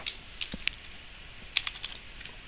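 Computer keyboard typing: a few keystrokes about half a second in and another quick run of keystrokes near the end.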